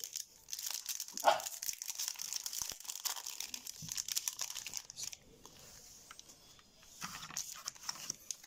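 Foil Yu-Gi-Oh booster pack wrapper crinkling as it is torn open and the cards are pulled out, a dense run of small crackles. A short, louder sound comes about a second in. The crinkling drops away briefly a little past the middle, then returns as the cards are handled.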